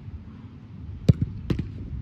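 Two sharp thumps about half a second apart, the first the louder: a football kicked hard, then striking the goalkeeper's gloves.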